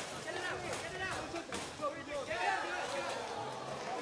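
Faint background chatter of people talking, with a few light clicks, well below the level of the commentary.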